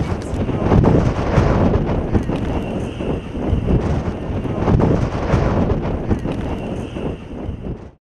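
Strong gusty wind buffeting the microphone: a loud, low, rough rush that swells and eases with each gust.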